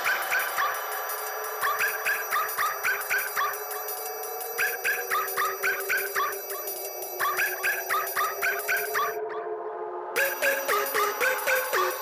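Intro of a neurofunk drum-and-bass remix: phrases of short, repeated high synth notes over a sustained pad, with no heavy bass yet. The top end cuts out for about a second around nine seconds in, then the note phrases come back.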